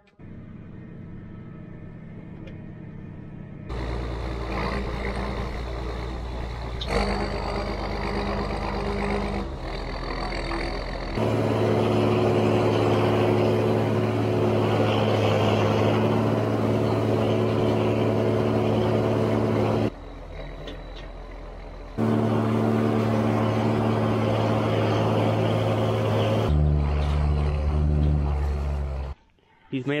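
Tractor engine running under load while a bale processor shreds a bale and blows bedding into a barn. It is a steady machine drone, cut into several short stretches and loudest in the middle, that stops shortly before the end.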